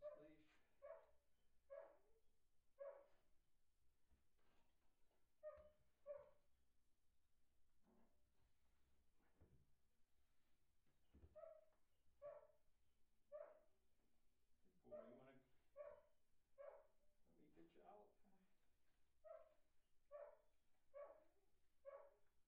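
Faint dog barking, short single barks about a second apart in runs of two to five with pauses between.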